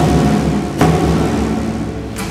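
Instrumental break in an Argentine folk song: a rawhide-laced folk drum struck twice with a stick, once right at the start and again just under a second later, each beat booming low, over a nylon-string guitar.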